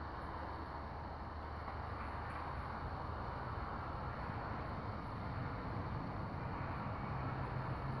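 Steady low background rumble and hiss, even throughout, with a faint low hum and no distinct knocks or tool sounds.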